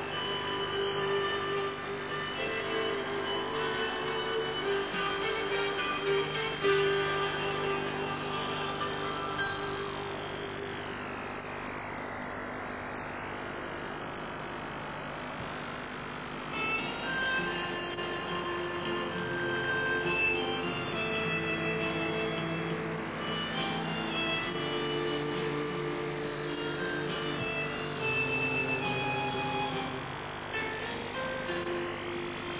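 Instrumental background music with a slow, held melody; the notes drop away for a few seconds about a third of the way in, then return.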